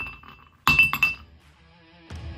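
Glass clinking: a ringing clink dies away at the start, then two sharp clinks about a third of a second apart, each ringing briefly before fading.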